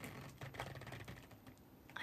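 Faint, quick light clicks of fingers tapping on a device, irregular like typing, thickest in the first second.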